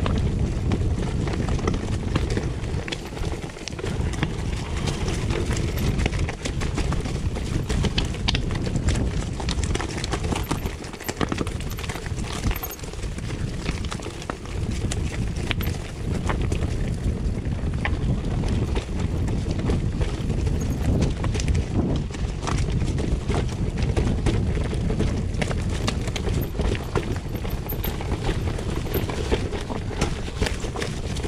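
Mountain bike riding down a rocky trail: the tyres roll and knock over loose stones and the bike rattles, a constant clatter of small knocks over a low rumble.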